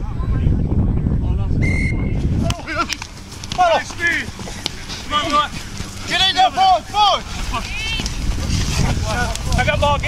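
Wind buffeting the microphone, with a brief steady whistle blast about two seconds in. Then, after an abrupt change, a string of short shouts that rise and fall in pitch.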